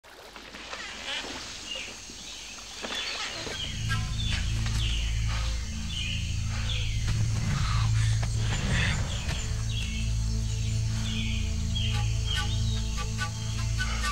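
Many birds chirping, short downward calls repeating throughout, over a low sustained music drone that comes in about three seconds in and holds.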